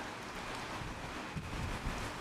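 Steady, faint hiss of room tone: the hall's background noise picked up by the microphone, with a couple of faint ticks about midway.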